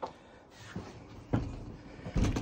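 A few faint knocks or clicks, the clearest one a little past halfway.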